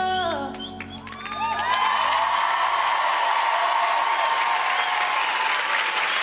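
The routine's music ends on a held chord that slides down and fades in the first half second. From about a second and a half in, a large audience applauds and cheers.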